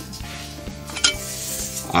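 A pinch of salt sprinkled over raw potatoes in a stainless steel pot: a sharp click about halfway through, then a brief hiss of falling grains, over soft background music.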